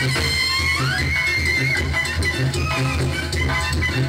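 Mexican banda (brass band) playing live: a high sustained melody line with a rising slide about a second in, over a pulsing low bass beat.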